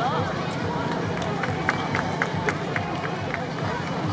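Voices of a yosakoi dance team calling out as the dancers move, with a run of about eight short sharp beats, roughly four a second, in the middle.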